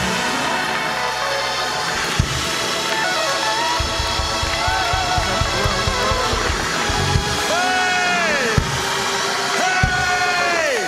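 Live church band playing loud, up-tempo praise music with a driving drum beat while the congregation praises. Near the end, a man's voice holds a long shouted note over the music that drops off at its end.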